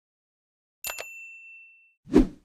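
Two quick mouse-click sound effects about a second in, followed by a single bright bell ding that rings out and fades over about a second: the click-and-notification-bell effect of an animated subscribe-button overlay.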